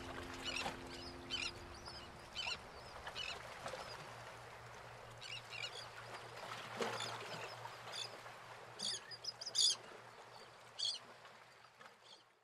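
The song's last notes die away in the first second or so, then a series of short, high bird chirps, a dozen or so spread irregularly, sound over a faint hiss and low hum that fade out at the end.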